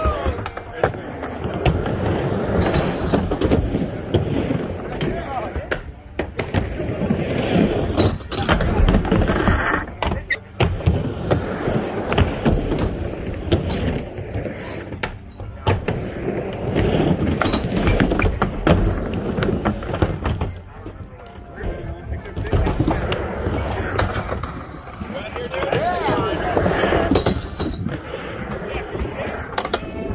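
Skateboards rolling back and forth on a plywood mini ramp, the rumble swelling and fading with each pass, with repeated clacks and knocks of boards and trucks hitting the deck and coping.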